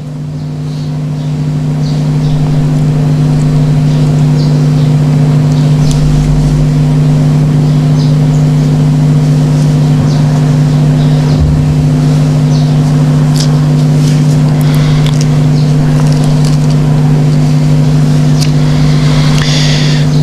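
Loud steady electrical mains hum, a buzz built on the odd harmonics of the 50 Hz supply, coming through the microphone and sound system. It swells over the first couple of seconds and then holds, with a few faint ticks and rustles on top.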